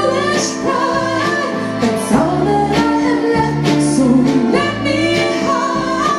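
A woman singing lead with a live band, backing singers and keyboards, guitars, violin and trumpet.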